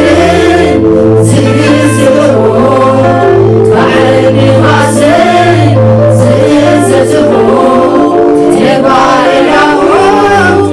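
Two women singing a Tigrinya worship song into handheld microphones, over long held low backing notes that change pitch now and then.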